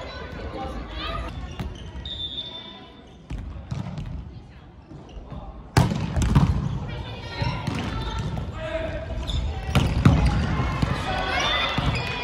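Volleyball rally: players calling out to each other, with sharp smacks of the ball being hit. The loudest smack comes about halfway through, another follows later.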